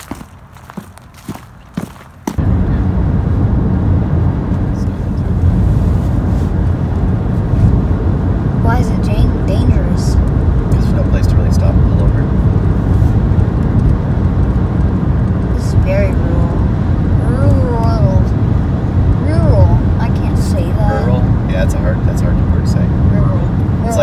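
Steady low rumble of road and engine noise inside a moving car's cabin, cutting in abruptly about two seconds in after a short quiet stretch with a few soft clicks.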